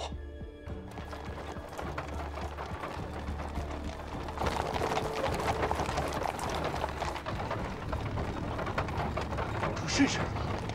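Horses' hooves clip-clopping on stone paving as riders and horse-drawn carriages pass, starting about a second in and growing louder midway, under background music.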